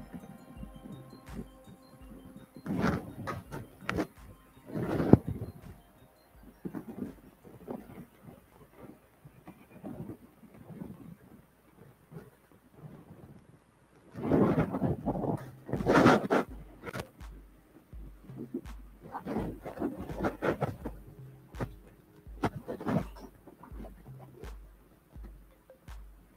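Green fine-line tape being peeled off its roll and pressed onto a metal motorcycle gas tank, in irregular short bursts with handling noise. The longest, loudest stretch comes a little past the middle.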